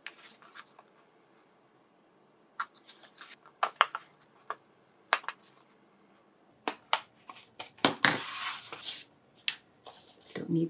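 A wooden-handled bookbinding awl pricking and pressing at the sewing-hole marks on a book cover's spine: a string of sharp clicks and taps. Near the end comes a longer rustle of paper being handled.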